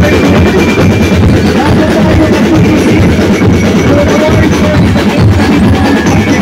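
Drum-and-lyre street band playing loud, dense drumming on bass drums and other drums, with bell lyres among the players.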